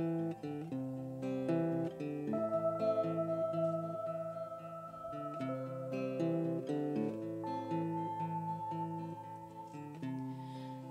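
Live band playing an instrumental intro: acoustic guitar picking a pattern of notes, with long held keyboard notes over it.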